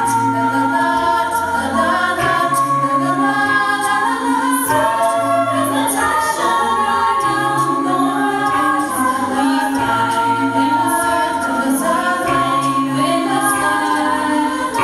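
Mixed-voice a cappella group singing live: women's lead voices over sustained chords, with a low bass part in held notes.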